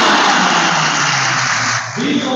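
Congregation applauding: dense hand-clapping that breaks off near the end.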